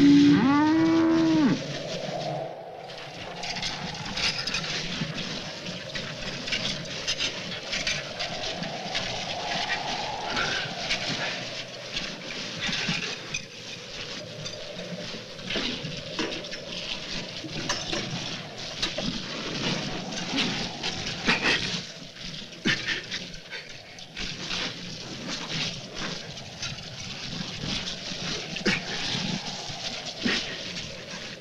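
A cow lets out a loud moo at the start. After that comes a steady storm wind that swells and fades, with many scattered crunches and knocks of movement over it.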